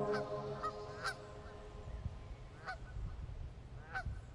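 Geese honking in flight: a few short, separate honks spread irregularly over the seconds, over a low rumble. Soft background music dies away at the start.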